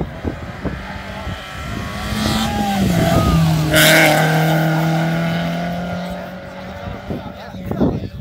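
Peugeot 206 rally car approaching at speed and passing close by. Its engine note builds, drops in pitch as it goes past with a brief rush of noise at its loudest, about four seconds in, then fades away.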